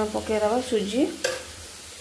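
Chopped onions, green chillies and curry leaves sizzling in hot oil in an iron kadai, frying towards golden brown. A single sharp knock comes a little over a second in.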